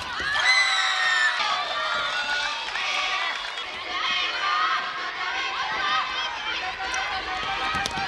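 Girls' high voices shouting and calling out across an indoor futsal court during play, with players' feet running on the wooden floor.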